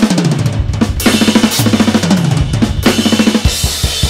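Drum kit with Soultone cymbals played fast and busy: rapid fills that fall in pitch, with bass drum, snare and several cymbal crashes.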